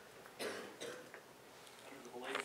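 Faint cough from someone in the room: two short bursts about half a second apart.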